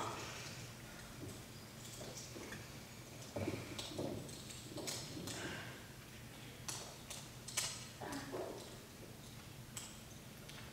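Scattered faint metallic clicks and soft knocks over a low steady hum: a pair of steel handcuffs being handled and snapped shut on the wrists, with an actor's footsteps and sitting on the stage sofa.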